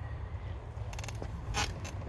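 Handling noise on a handheld phone microphone: a steady low rumble with a few short scrapes and clicks about a second in and again near the end.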